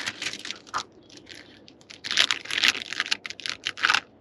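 Plastic soft-bait package crinkling and rustling as it is handled and opened: a run of short crackling rustles, busiest in the second half.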